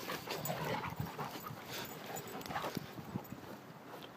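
Dogs playing together, faint, with scattered short scuffles and breathy sounds.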